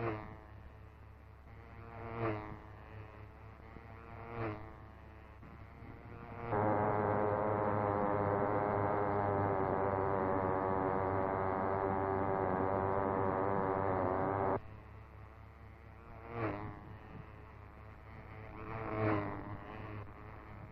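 Small two-stroke engine of a model racing car at full speed, going past about every two seconds, each pass swelling briefly and sweeping in pitch. In the middle a loud, steady buzzing engine note runs for about eight seconds and cuts in and out suddenly, then the passes resume.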